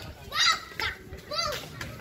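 Small children's voices: three short, high-pitched calls and babble, with low background noise between them.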